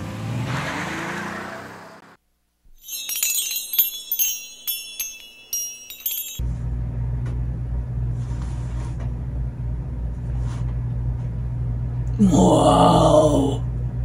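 Intro music fading out, then a brief high, glittering electronic sound effect. After that comes a steady low hum of room noise, with a short voice sound near the end.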